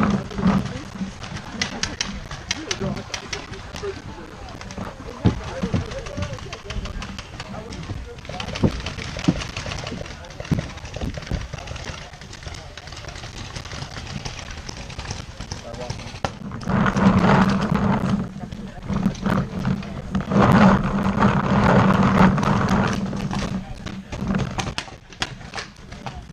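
Paintball players moving up under fire: scattered sharp snaps of paintball markers and knocks of gear and footfalls, with shouting voices that grow louder in the second half.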